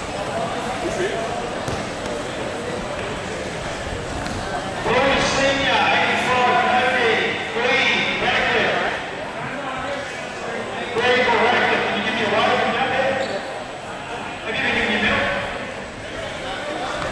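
Several voices shouting in a large, echoing hall, in loud stretches about five seconds in, again near the middle, and once more near the end, over steady crowd chatter.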